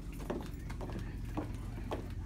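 Footsteps of shoes on a hard tile floor, a steady walking pace of about two steps a second, over a low steady hum.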